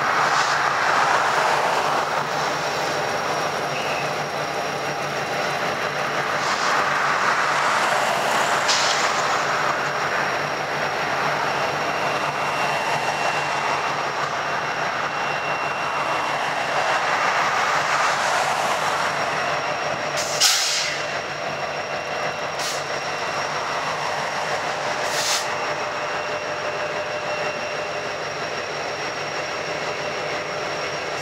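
EMD SD70ACe diesel-electric locomotive and a trailing unit rolling slowly past, with steady engine rumble and steel wheels on rail that swell and ease, and a thin steady high whine. A few sharp clicks sound over the train noise, the loudest about 20 seconds in.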